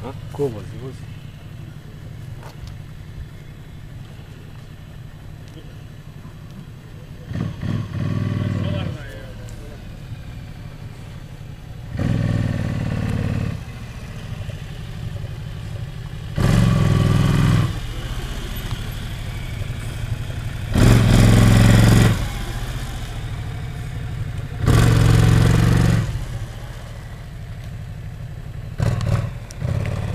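Police motorcycle engine running at low speed, with five short bursts of throttle of about a second each as the rider weaves slowly through a cone course.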